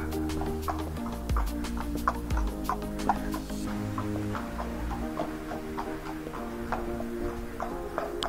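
Background music: steady held chords over an even ticking beat of about three clicks a second.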